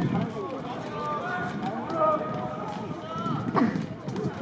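Boys' voices shouting and calling to one another across a football pitch during play, with some calls held long. A single sharp knock about three and a half seconds in.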